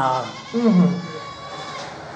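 An elderly man's voice: a word trailing off at the start, then one short drawn-out syllable falling in pitch about half a second in, followed by a faint steady room background.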